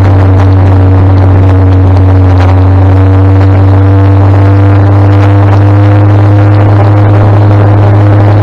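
Rolls-Royce B60 straight-six petrol engine of a 1959 Daimler Ferret armoured scout car, heard from on board as a loud, steady drone while the car drives along at an even pace.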